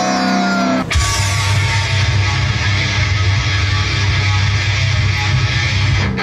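Live rock music with heavy distorted electric guitar. A held note in the first second gives way to a loud, dense riff that kicks in about a second in.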